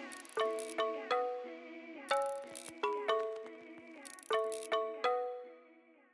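Background music of plucked notes in short runs of three or four, each note ringing away. The music fades out near the end.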